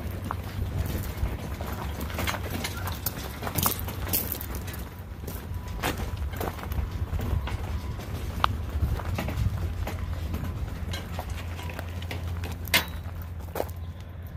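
Footsteps and a loaded flat cart of potted plants rolling over a gravel path: a steady low rumble with scattered clicks and rattles throughout.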